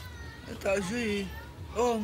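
A woman speaking in two short phrases, with a brief pause at the start.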